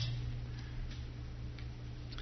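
Room tone with a steady low electrical hum, in a pause between spoken phrases.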